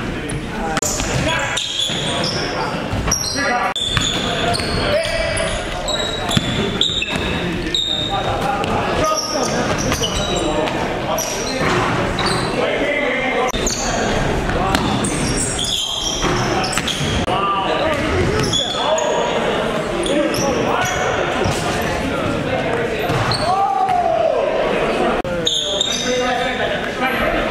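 Live basketball game sound in a gym: a basketball bouncing on the hardwood court amid players' voices, echoing in the hall.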